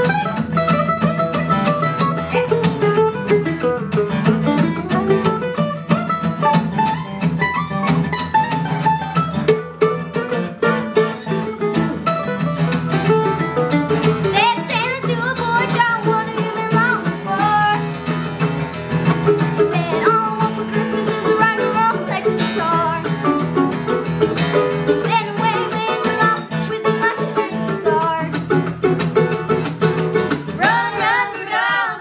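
Mandolin and acoustic guitar playing an upbeat Christmas rock-and-roll tune, with a young girl's lead vocal coming in about halfway through.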